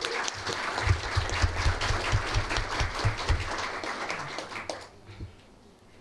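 Audience applauding, a dense crowd of hand claps that dies away about five seconds in.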